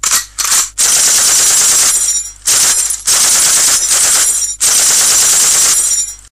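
Machine-gun fire sound effect. There are two short bursts, then three long sustained bursts of automatic fire with brief breaks between them.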